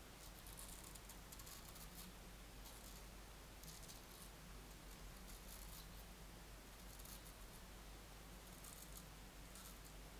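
Freshly honed straight razor shaving lathered stubble on the upper lip: faint, short scraping strokes through the whiskers, one every second or so.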